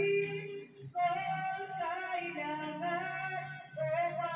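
A woman singing a song in Aklanon, with long held notes and a short break between phrases about a second in.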